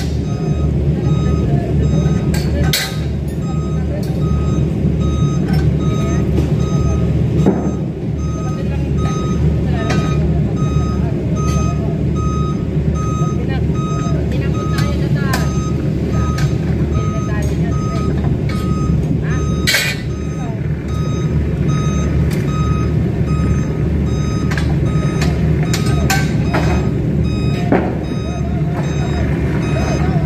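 A heavy vehicle's reversing alarm beeping in a steady on-off rhythm over the continuous rumble of its running engine. Occasional sharp knocks sound through it.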